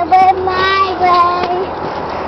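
A toddler's high sing-song voice holding three drawn-out notes over about a second and a half, the last note slightly lower.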